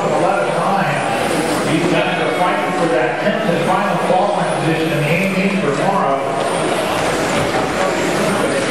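A race announcer talking over the constant whine and hiss of radio-controlled electric touring cars running on a carpet track.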